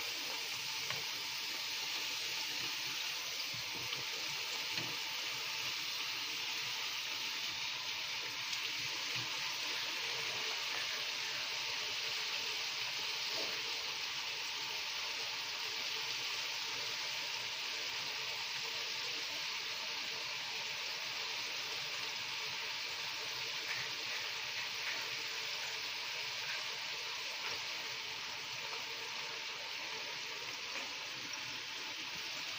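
Fry jack dough frying in hot oil in a skillet: a steady sizzle with faint crackles, easing slightly near the end.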